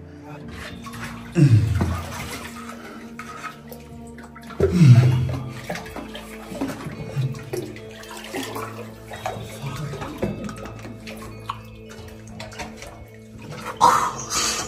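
Water sloshing and splashing around a person wading and ducking through a flooded, low-roofed cave passage, with two louder surges about a second and a half and five seconds in. Steady background music runs underneath.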